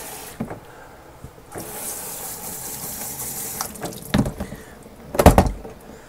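Water from a sink spray nozzle on its shower setting hissing onto an orchid's roots in the sink, stopping about half a second in, running again from about a second and a half to nearly four seconds, then shut off. Two sharp thumps follow near the end, the second the loudest.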